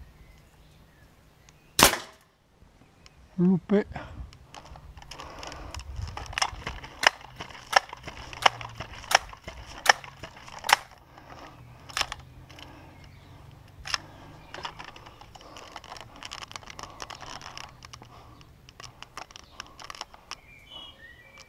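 An air rifle firing a single pellet shot about two seconds in, one sharp report. A run of smaller sharp clicks and knocks follows as the rifle is handled.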